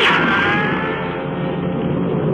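Gunshot sound effect with a ricochet whine falling in pitch and fading within about a second, from an old narrow-band recording, followed by a steady low hum.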